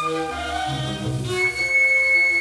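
Contemporary classical chamber ensemble playing an instrumental passage with bowed strings to the fore: a series of held notes shifting in pitch. About one and a half seconds in, a new high held note enters and the music grows louder.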